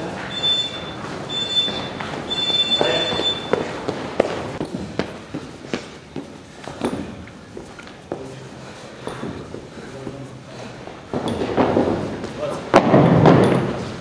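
Scattered thuds of feet and a weight plate on a rubber gym floor during a plate workout, with people talking in the background. A high steady tone sounds four times in quick succession over the first few seconds.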